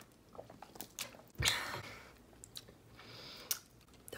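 Drinking from a plastic water bottle: quiet mouth and swallowing sounds with small clicks, and one louder thump and rush of noise about a second and a half in.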